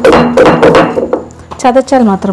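A woman talking in a kitchen, in speech the recogniser did not write down.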